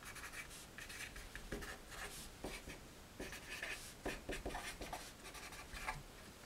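Marker pen writing on a poster sheet: a quick, irregular run of short, faint scratching strokes as a line of words is written out.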